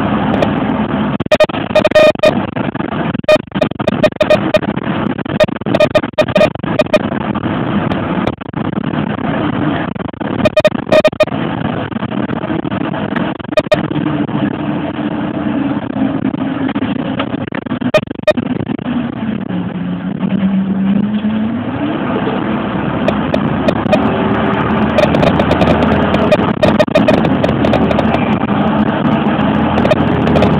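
Bus engine and road noise heard from inside a moving bus, with repeated short knocks and rattles. Around two-thirds of the way through, the engine note falls and then rises again.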